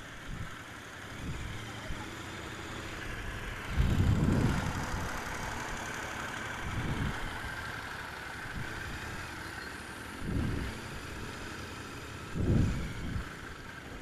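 Royal Enfield Continental GT 650 parallel-twin engine running at low speed in slow, stop-and-go traffic, with other vehicles' engines around it. The engine sound swells briefly about four seconds in and twice near the end.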